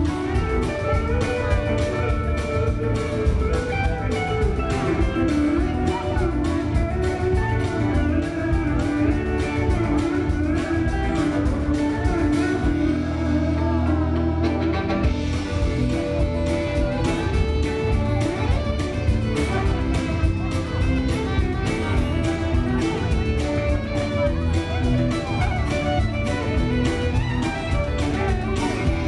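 A live country band playing an instrumental passage with drum kit, bass, guitars and fiddle. The drums stop for about two seconds around halfway through, then come back in.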